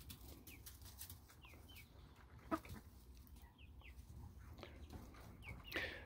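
Faint, scattered short chirps from a small flock of young chickens and a hen, with one slightly louder sound about two and a half seconds in.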